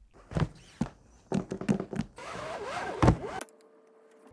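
A few sharp knocks and taps, then a creaking, scraping sound with a heavy thump near its end that cuts off suddenly. A faint steady hum remains.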